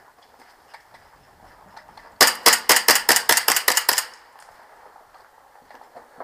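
Airsoft 1911 pistol fired in a rapid string, about a dozen sharp cracks in under two seconds, starting about two seconds in; it scores a hit on an opponent higher up.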